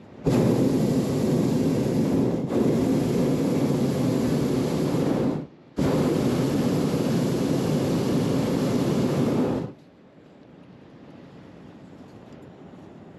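Hot air balloon propane burner firing overhead in two long blasts, about five and four seconds, with a short break between them. It is the steady roar of the flame heating the air in the envelope, switched sharply on and off.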